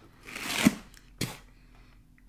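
Teeth biting and scraping at the corner of a cardboard box: a rustle of cardboard that builds and ends in a sharp snap under a second in, then a single short click a little later.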